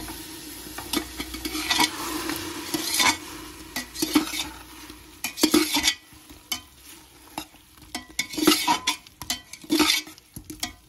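A steel spoon stirring cauliflower and masala frying in an aluminium pressure cooker, with irregular metal scrapes and clinks against the pot. An oil sizzle is strongest in the first few seconds and thins out after about five seconds.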